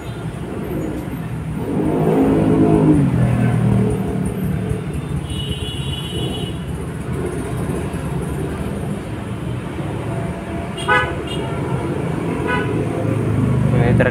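Road traffic noise, with a motor vehicle passing about two seconds in and a short, high horn toot near the middle.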